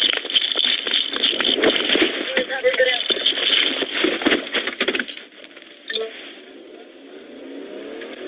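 Loud, crackling, distorted audio with garbled voices, cut off sharply at the top, for about five seconds. It then goes quieter, and near the end a police cruiser's engine rises in pitch as the car accelerates away.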